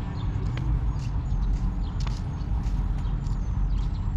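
Outdoor park ambience: a steady low rumble with a few scattered light taps.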